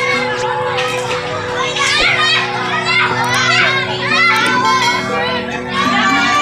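Many children's voices chanting and calling out together over music with steady held tones.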